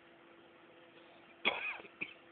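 A short, sudden cough-like vocal sound about one and a half seconds in, falling in pitch, then a brief second one near the end, over a faint steady hum.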